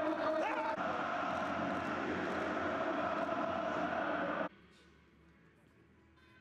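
Steady pitch-side ambience of a stadium with empty stands, with faint voices in it; it cuts off suddenly about four and a half seconds in.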